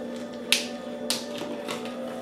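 A wire fox terrier puppy eating from a food-dispensing dish on a tile floor: three sharp clicks about half a second apart as the dish and kibble knock against the tiles.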